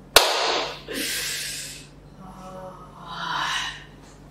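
A single sharp hand clap, the loudest sound, followed by several breathy bursts of laughter.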